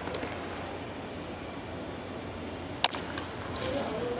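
Steady, even background ambience of the ballpark broadcast, with one short sharp click a little under three seconds in.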